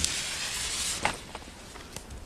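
Lit firecracker fuse sizzling with a high hiss for about a second, then a sharp click, followed by a couple of faint ticks.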